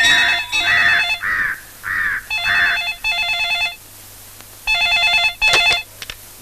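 A push-button desk telephone's electronic ringer trilling in repeated bursts, with a short pause between rings.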